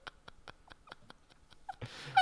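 Faint, breathy laughter tailing off: quick soft puffs of breath, several a second, from men laughing almost silently.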